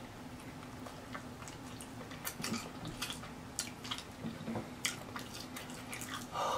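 Close-miked chewing of a cheese-sauce-covered, Hot Cheetos-crusted fried turkey leg: irregular wet clicks and mouth smacks, several a second at times, with pauses between.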